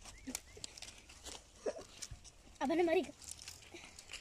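Faint rustling and light knocks, typical of dry firewood being handled and tied into a bundle. A brief vocal sound with a wavering pitch comes about two and a half seconds in.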